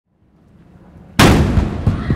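A Navy saluting cannon fires one blank round about a second in: a single loud bang with a long echo trailing off after it.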